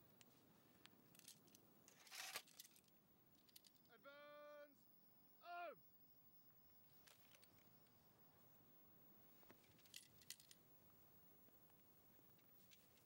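Near silence with faint clinks and rattles of rifles and equipment, about two seconds in and again near the end. In the middle come two short pitched animal calls: a steady one of under a second, then a brief falling one.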